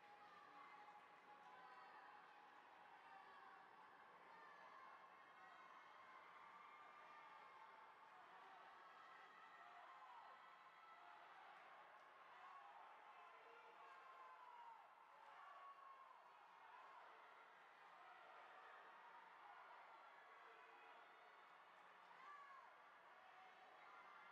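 Very faint spectators cheering and yelling on the swimmers, with scattered short rising and falling shouts over a low hubbub.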